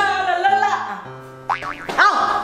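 A child singing into a handheld karaoke microphone over a backing track with a steady bass beat; the voice drops away after about a second. Near the end, a wobbling comic boing sweeps up and down in pitch.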